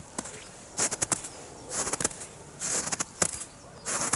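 Footsteps crunching in frozen snow, a step about every second.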